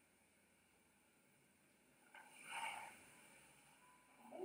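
Near silence: quiet room tone, with one brief faint sound a little past halfway.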